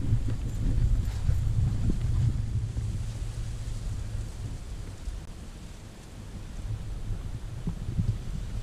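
Wind buffeting the camera microphone: an uneven low rumble that eases off past the middle and picks up again near the end.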